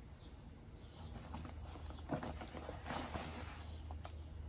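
Hands pressing and working potting mix around a stem in a ceramic pot: soft crunching and rustling, busiest in the middle with one sharper tap, over a steady low hum.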